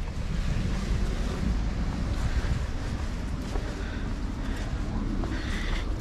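Steady wind noise rumbling and hissing on the microphone, with low street background.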